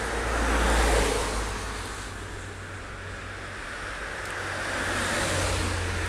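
Cars driving past on a street: tyre and engine noise swells as one car passes about a second in, fades, then builds again as another car approaches near the end.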